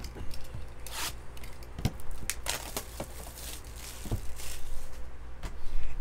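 A trading-card box being opened by hand: tearing, scraping and rubbing of its wrapping and cardboard, with a few short sharp taps.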